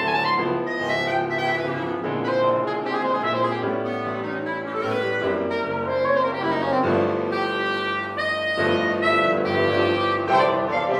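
Clarinet, soprano saxophone and grand piano playing a jazz arrangement together, with the two reeds holding sustained melodic lines over the piano.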